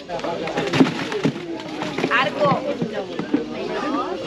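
Chatter of several people talking at once, in short overlapping snatches, with a sharp knock just under a second in.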